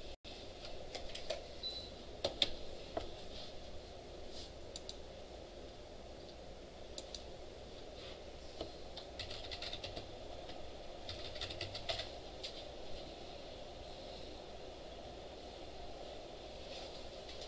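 Computer keyboard being typed on in short bursts of clicks with pauses between them, over a steady low room hum.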